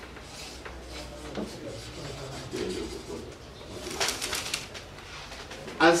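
A bird's low cooing call, dove-like, heard faintly through the room noise, with a few short clicks about four seconds in.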